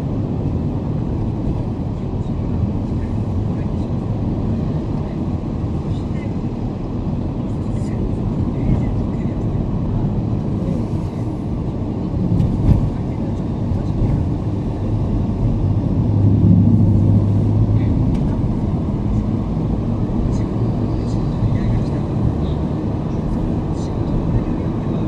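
Road and engine noise of a moving car, heard from inside the cabin: a steady low rumble of tyres and engine, with a louder low drone swelling for a couple of seconds about two-thirds of the way through as traffic goes by.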